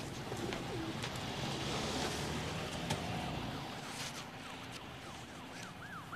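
Soft street noise with a few light knocks, and a far-off siren yelping, its pitch quickly rising and falling over and over, coming in about four seconds in.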